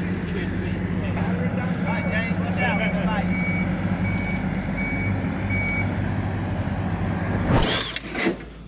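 Tracked skid steer's diesel engine running steadily while its backup alarm beeps, six or so short high beeps about 0.6 s apart, a sign that the machine is reversing. The engine sound cuts off just before the end.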